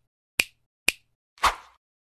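Intro sound effects timed to an animated title: two sharp clicks about half a second apart, then a fuller, slightly longer hit about one and a half seconds in.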